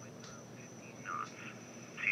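Faint, brief snatches of sound from a Bearcat 101 scanner's speaker, about half a second and a second in, as its squelch and volume knobs are turned. The squelch potentiometer is noisy, so the squelch opens only intermittently.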